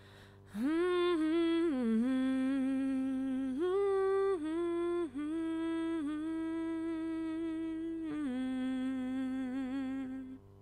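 A solo voice humming the song's wordless closing melody: a slow run of long held notes with a slight vibrato, stopping right at the end.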